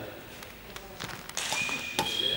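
Sports-hall background: faint distant voices and scattered light taps and knocks echoing in the large hall, with a thin high steady tone starting near the end.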